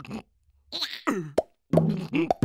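Cartoon sound effects: a short sliding tone that falls in pitch, then a sharp plop about one and a half seconds in, with brief silences around them.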